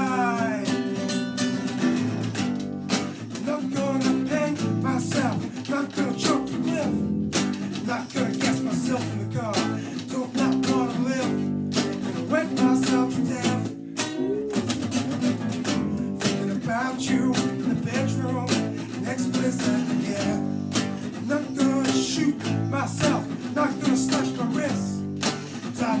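Strummed nylon-string acoustic guitar and electric bass playing a song together.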